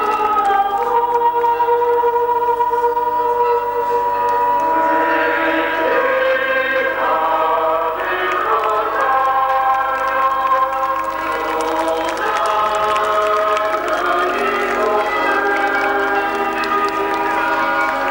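Many voices singing together in slow, held notes, like a hymn sung by a crowd or choir.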